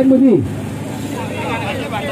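A man's voice chanting through a handheld microphone, the last word of the chant falling away in pitch about half a second in, followed by quieter overlapping crowd voices.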